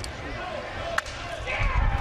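Bat meeting a pitched baseball on weak, sawed-off contact: one sharp crack about halfway through, over steady ballpark crowd noise that swells just after it.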